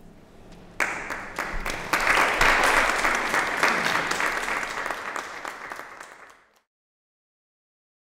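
Audience applauding: the clapping starts about a second in, is loudest in the middle, thins out, then cuts off suddenly.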